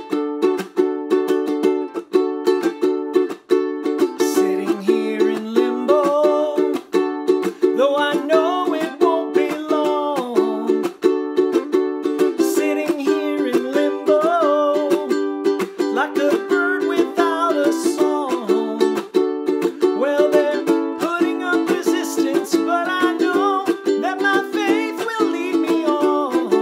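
Ukulele strummed in a steady chord rhythm, with a wordless vocal melody, hummed or sung, joining about four seconds in.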